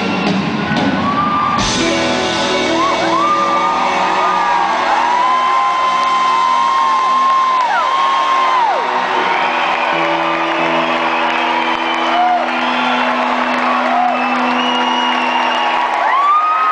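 Live band with acoustic guitar and horns playing out the end of a song, with a sharp accent just before two seconds in and a held chord from about ten seconds in. Audience members whoop and shout over the music throughout.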